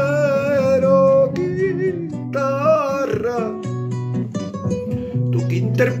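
Acoustic guitar accompaniment of a Peruvian vals criollo, with a man's voice holding the last sung note with vibrato for about the first second. After that the guitar carries a short instrumental passage of plucked bass notes and melody until the singing resumes near the end.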